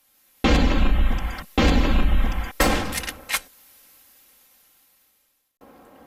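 Logo sound effect: three loud booming hits about a second apart, the third with sharp cracks on top, then a fading tail.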